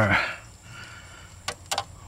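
Light handling of plastic wiring-harness connectors and wires, with two or three quick small clicks near the end.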